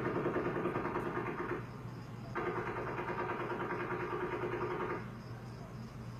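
Distant rapid automatic gunfire: a fast, even rattle of about nine shots a second in two long bursts, with a short break about a second and a half in and the firing stopping about five seconds in.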